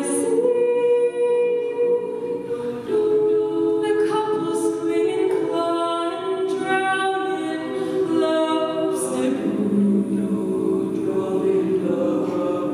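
Women's a cappella group singing unaccompanied: several voices holding sustained chords beneath a melody line that moves above them.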